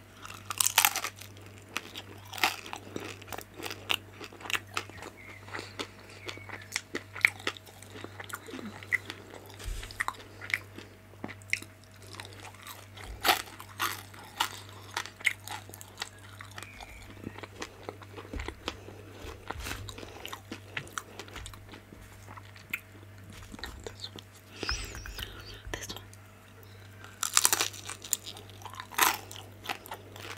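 Close-miked biting and chewing of crunchy pan-fried vegetable dumplings (gyoza): repeated sharp crunches and crackles of the crisp browned skin, loudest about a second in and again near the end, over a low steady hum.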